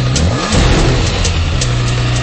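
2009 Kawasaki ZX-6R's inline-four engine revving: its pitch climbs quickly under a second in, then holds at a steady high rev.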